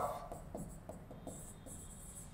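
Marker pen writing on a whiteboard: a run of faint, short scratchy strokes as a word is written.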